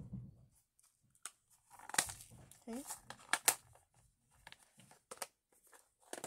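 Clear plastic storage cases being handled on a table: a soft thump at the start, then a string of sharp plastic clicks and knocks as lids and cases are shut and moved.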